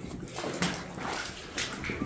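Boots splashing and squelching through shallow water on a wet mine tunnel floor, a few irregular steps.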